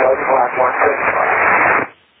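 A voice speaking over an aviation VHF radio channel, thin and hissy with the top end cut off; the transmission cuts off abruptly near the end.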